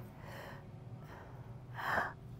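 A woman's sharp intake of breath near the end, over a faint steady low room hum.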